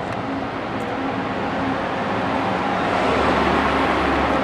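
City street traffic: a steady wash of car engine and tyre noise from a busy road, growing slightly louder toward the end as a low engine rumble comes in about three seconds in.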